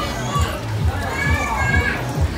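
Children's voices and chatter from a busy play area, over music with a steady thumping beat.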